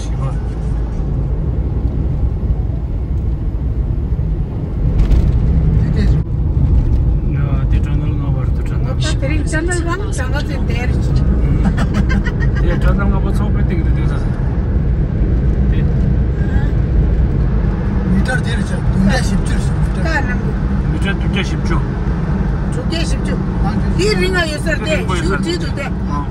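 Steady low rumble of a Renault Kwid driving, engine and road noise heard from inside the cabin, a little louder from about five seconds in as the car runs into a road tunnel.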